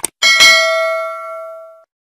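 A quick mouse-click sound effect, then a notification-bell ding that rings with several tones and fades, cut off abruptly near the end.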